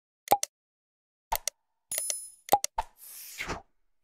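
Animated subscribe end-screen sound effects: a few short pops and clicks, a bright ding about two seconds in, and a short whoosh near the end.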